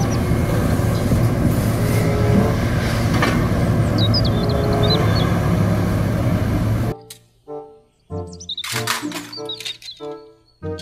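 A scrapyard material handler with an orange-peel grapple running, heard as a dense steady rumble with a few bird chirps about four seconds in. At about seven seconds it cuts off abruptly and gives way to light background music.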